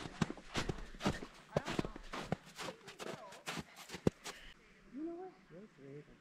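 Footsteps on snow at a walking pace, about two or three steps a second, stopping about four and a half seconds in, after which a faint voice is heard.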